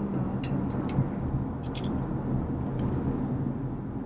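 Steady engine and road noise inside a moving car's cabin, with a few faint light clicks in the first three seconds.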